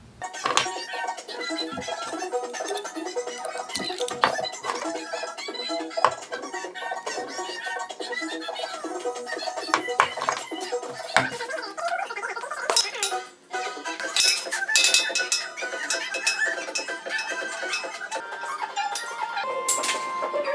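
Background music with many short, quick notes and no bass, with a brief drop-out about two-thirds of the way through.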